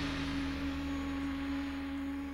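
A single sustained note from the soundtrack music, held steady and quiet after the fuller arrangement has faded out.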